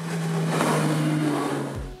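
Twin Mercury 250 hp outboard engines driving a rigid inflatable boat at speed: a steady engine note over the rush of spray and hull noise. The sound swells and then fades, with a brief low thump near the end.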